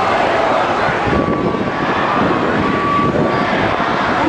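Passing street traffic and the mixed voices of a large crowd of demonstrators, a dense steady din with faint snatches of pitched voice above it.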